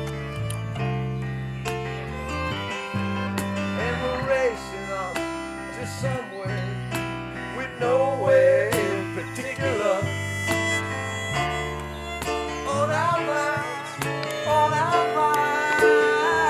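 Band playing an instrumental passage: an electric guitar picked over steady held bass notes, with a fiddle melody that wavers in pitch.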